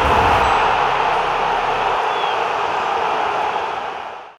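Outro sound effect: a loud rushing noise with a heavy low rumble that drops away about halfway through, leaving a steady hiss that fades near the end.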